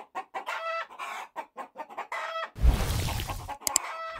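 A chicken clucking in a quick run of short, repeated calls. About two and a half seconds in, a loud burst of noise with a heavy low end takes over for about a second, followed by a couple of sharp clicks.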